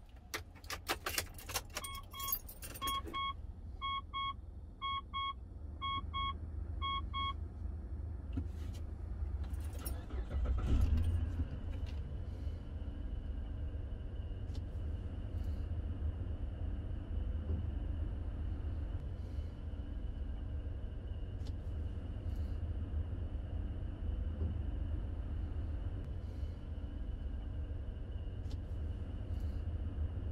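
Ignition keys jangling and clicking in the lock of a 3.8 L 2009 Mitsubishi Pajero, and a dashboard warning chime beeping six times about once a second. About ten seconds in the engine starts with a loud surge and then idles with a steady low rumble and a faint steady high whine.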